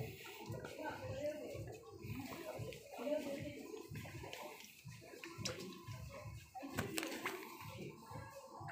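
Indistinct voices of people talking in the background, over an uneven run of low rustling thuds.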